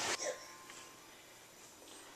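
The last moment of a man's voice right at the start, then near silence with a faint thin steady tone for about a second.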